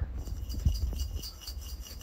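A homemade plastic carrot-shaped shaker filled with a little rice and aquarium rock, shaken by hand to give a light, jingly rattle.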